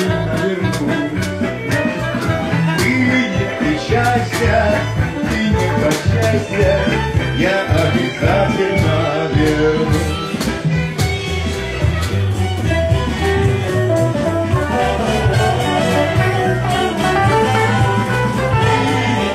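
Live band playing an instrumental passage of a pop song: saxophone lead at the start over electric bass and drum kit, with a steady beat.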